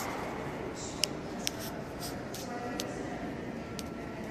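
Indoor room ambience with a faint murmur of voices, and two sharp clicks about one and one and a half seconds in.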